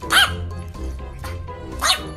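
Two short, high-pitched calls from an Asian small-clawed otter, about a second and a half apart, each rising and falling in pitch, over background music.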